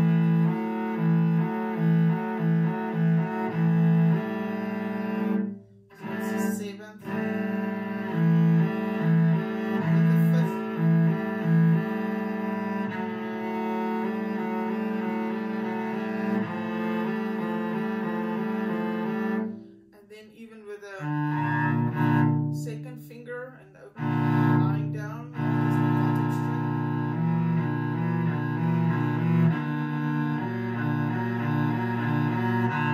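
Solo cello playing bowed double stops as an intonation exercise: one note held while the note on the other string comes and goes in a steady rhythm, stepping through different intervals. The playing stops briefly a few times, near six, twenty and twenty-five seconds in.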